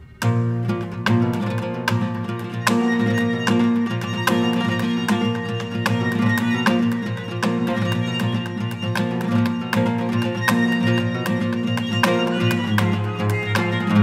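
Instrumental folk piece with a flamenco feel, played on acoustic guitar, violin and double bass. After a quiet passage the full trio comes in sharply: rapid plucked guitar notes over a sustained bass line and bowed violin.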